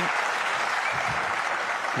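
Audience applauding a good snooker shot, steady clapping from the arena crowd.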